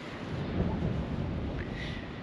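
Wind blowing across the microphone outdoors: a steady low rushing noise.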